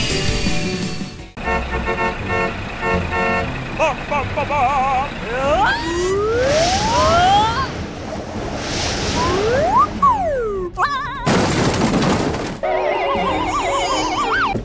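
Light background music with cartoon sound effects laid over it: wobbling tones, two airy whooshes, sliding whistle-like tones that rise and fall, a hissing burst about a second long a little before the end, then warbling tones.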